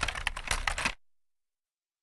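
Rapid run of sharp clicks like typing on a keyboard, stopping abruptly about a second in.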